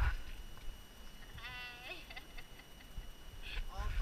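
A short, high, wavering vocal sound from a person about one and a half seconds in, with fainter short voice sounds near the end. Low bumps from handling the handheld camera at the start and end.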